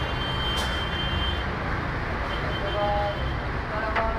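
Steady street traffic noise with a low rumble and a few faint, short tones.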